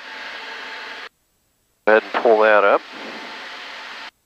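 Cabin noise of the Diamond DA42 TwinStar heard through the headset intercom: a steady hiss with a faint hum that cuts off abruptly about a second in as the intercom squelch closes. About halfway through a brief spoken phrase opens it again, and the noise carries on behind and after the voice.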